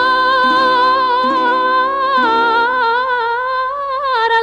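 A woman singing a long, drawn-out note with wide vibrato in the Sardinian 'cantu in re' guitar-song style, over guitar chords struck about once a second. About two seconds in the guitar falls away and the voice steps down in pitch, then climbs again near the end.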